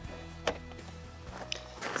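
Greenhouse door being shut and its metal lever handle turned to latch it: a sharp click about half a second in and another about a second and a half in.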